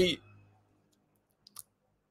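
The end of a man's sentence dies away, then dead silence broken by a couple of faint clicks about one and a half seconds in.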